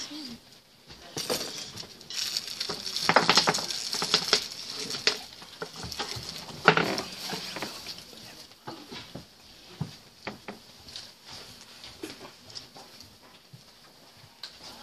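Rustling and shuffling of people moving about, with scattered clicks and knocks, one sharp knock about halfway in. It is busiest in the first half and thins out after that.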